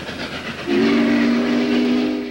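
Steam locomotive running with a rushing hiss, then its steam whistle sounds a long, steady chord starting under a second in.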